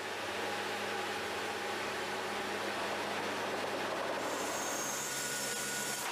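Steady drone of a C-130 Hercules' four turboprop engines heard inside the cargo hold, with a low hum under a broad hiss. The hiss shifts in tone about four seconds in.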